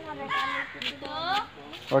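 Boys' voices calling out at a distance during an outdoor game, with two short, higher calls about half a second and a second in, over low background talk.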